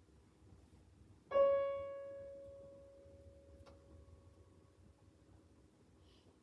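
Grand piano: a single high note struck about a second in, left to ring and fade away slowly over several seconds.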